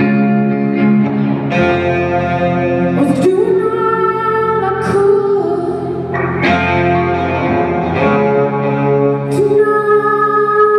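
Live rock music: distorted electric guitars holding chords that change every second or two, with a woman singing.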